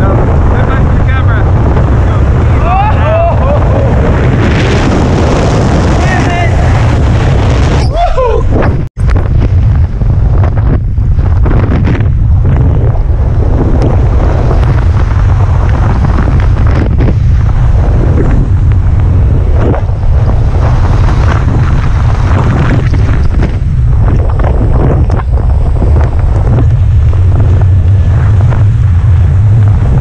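Wind buffeting a helmet-mounted camera's microphone during a tandem parachute descent: a loud, steady rush with heavy low rumble. The sound cuts out for an instant about nine seconds in.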